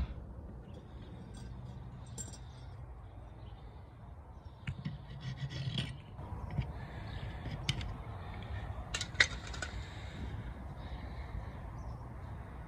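Hacksaw cutting through the steel spindle of a seized rear wiper arm: fairly quiet scratchy sawing strokes with a few sharp metallic clicks, the loudest about nine seconds in.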